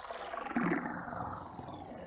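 Sound effect of liquid pouring from a bottle, running continuously, with a louder surge about half a second in.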